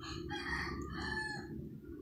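A faint rooster crow, one drawn-out call of about a second and a half.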